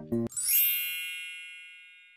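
The last notes of light background music, then about half a second in a bright, bell-like chime that rings and slowly fades away.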